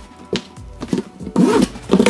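Scissor blade dragged along cardboard, scoring a fold line into a corrugated shipping box, under background music that grows louder in the second half.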